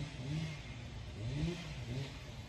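A motor vehicle engine revving up and down twice, with a steady hiss behind it.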